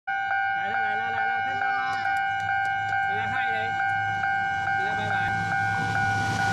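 Railway level-crossing warning bell ringing, an even ding a little over twice a second, sounding as a train approaches.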